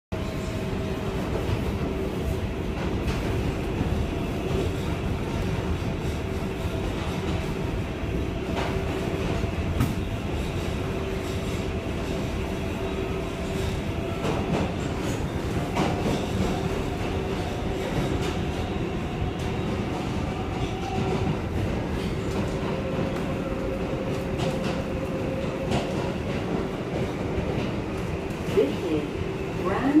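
Inside an R188 subway car running through the tunnel: a steady rumble of wheels on rail with a constant whine from the running gear and an occasional sharp click.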